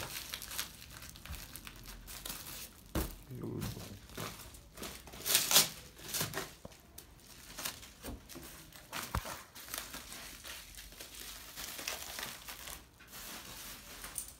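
Plastic bubble wrap rustling and crinkling in irregular bursts as bottles are wrapped and set into a cardboard box, with a few short knocks; the loudest crinkle comes about five and a half seconds in.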